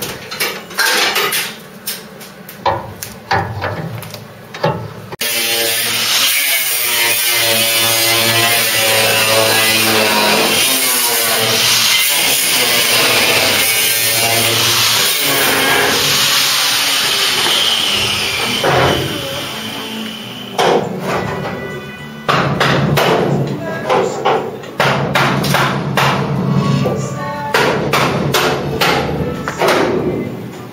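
Irregular knocks and taps of hand tools on the steel bodywork of a car shell under restoration. A stretch of music comes in suddenly about five seconds in and fades out around twenty seconds, after which the knocking resumes.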